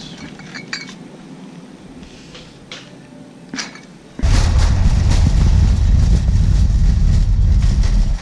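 Shopping cart in a store, quiet apart from a few light clicks and clinks. About four seconds in, a loud, steady low rumble and rattle starts suddenly as the cart rolls across parking-lot asphalt.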